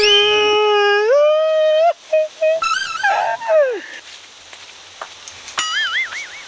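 A man's long, loud held cry that steps up in pitch about a second in, followed by shorter cries and a falling call. Near the end comes a high, wavering cry.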